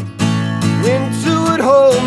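Acoustic guitar strummed steadily to accompany a man's singing voice, which comes in about halfway through with a note that bends up and down.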